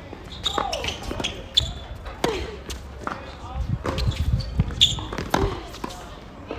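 Tennis rally on a hard court: several sharp strikes of rackets on the ball and ball bounces on the court, with voices in the background.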